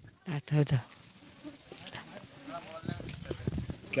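Faint bleating of a farm animal, a short wavering call about a second and a half in, with a few brief low vocal sounds near the start.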